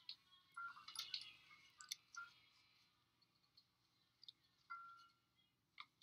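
Near silence: a film soundtrack playing very quietly, with a few faint clicks and short tones, mostly in the first two seconds.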